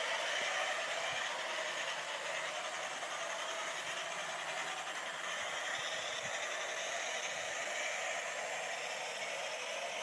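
00 gauge model train running along outdoor track, a steady rolling noise with a few faint ticks.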